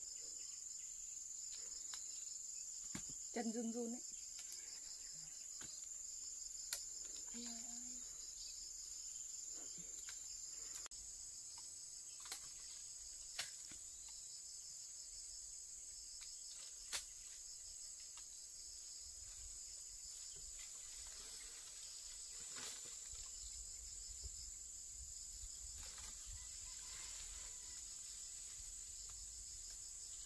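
Steady high-pitched chirring of insects in the surrounding vegetation, with a pulsing layer beneath it. A few sharp clicks are heard through it, and a short voice sound about three and a half seconds in.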